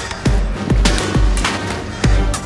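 Electronic music with a steady beat: deep bass drum hits that drop in pitch, and a sharp snare-like hit about once a second.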